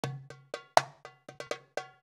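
Intro music sting: a quick, uneven run of sharp percussion hits, each ringing briefly with a bell-like tone, the loudest a little under a second in.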